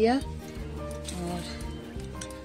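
Background music with long held notes, and a brief word of speech at the very start.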